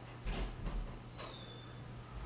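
Faint rustling and soft handling bumps, a few brief ones in the first second, over a low steady hum.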